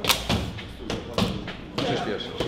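Gloved punches landing on pads during a fighter's warm-up: five sharp thuds in two seconds, falling in quick one-two pairs.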